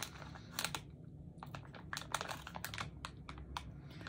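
A resealable plastic candy pouch crinkling as it is handled, making a run of small, irregular crackles.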